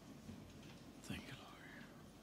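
Faint whispering, with a brief high sliding chirp-like sound and a low bump about a second in.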